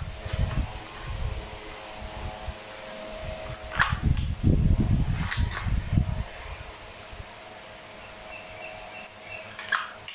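Homemade cardboard AR-15 replica being handled and aimed: low, irregular handling bumps with a few sharp clicks, about four seconds in, again at about five and a half, and just before the end.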